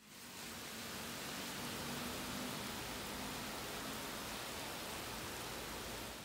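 Heavy rain falling steadily on a street and pavement: an even hiss with no breaks.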